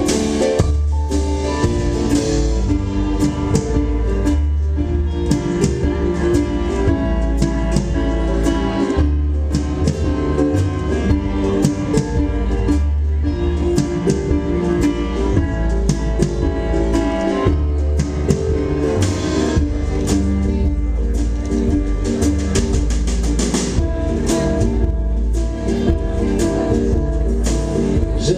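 Live band playing an instrumental passage on piano, guitar and drums.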